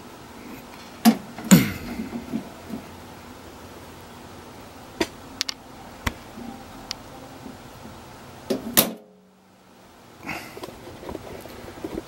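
Scattered sharp knocks and clicks of handling against the sheet-metal welder cabinet over quiet room tone, loudest about one and a half seconds in and again just before nine seconds. The sound cuts out almost entirely for about a second after that.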